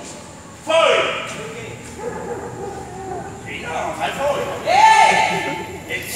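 Speech only: a voice in a large room, with words the recogniser did not catch and some strongly swooping, exaggerated intonation.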